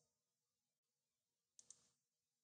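Near silence, broken about one and a half seconds in by a faint double click of a computer mouse button.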